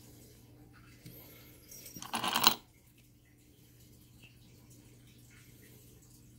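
Stone artifacts being handled: a brief scrape and clack of rock about two seconds in, over a faint steady hum.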